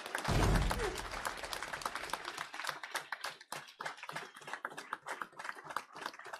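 A small group applauding with irregular hand claps, dense at first and thinning out toward the end. A low thud comes about half a second in.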